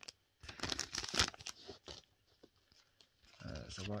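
A foil Pokémon Celebrations booster pack being torn open and crinkled by hand: a burst of tearing and crinkling in the first couple of seconds, then a few faint clicks as it is handled.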